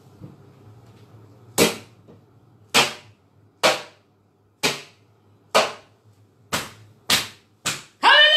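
A long wooden rod knocking on a hard surface: eight sharp knocks about a second apart, the last three coming quicker.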